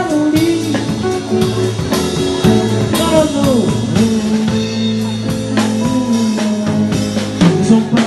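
Live band playing an instrumental passage: electric bass and a drum kit with cymbal strikes under a lead melody line that slides up and down in pitch.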